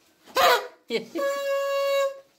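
A paper party horn blown in one steady note for about a second, starting a little past the middle. Before it comes a short loud shout and a spoken word.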